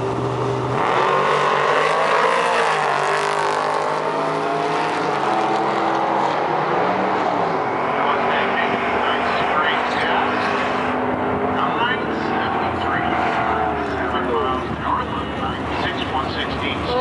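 GMC Sonoma pickup launching off a drag-strip starting line about a second in, its engine revving hard and climbing in pitch, stepping through its gears on a quarter-mile run, then fading as it goes down the track.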